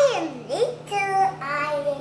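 A young girl's high-pitched, sing-song vocalizing without clear words: a swooping note that falls at the start, a short upward slide, then two held notes.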